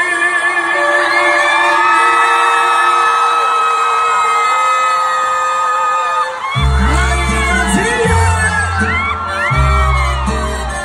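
Live band music heard from the crowd in a large hall: sustained held notes, then about six and a half seconds in the full band comes in with heavy bass, while high gliding whoops and screams from the audience rise over it.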